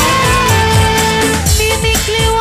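Live dangdut band music, loud and steady: a long held melody note over low drum strokes whose pitch bends downward.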